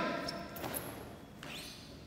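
The tail of a loud shout, likely the students' kiai, dying away in the echo of a hard hall, then faint thuds and rustles as the karateka move into their next stances.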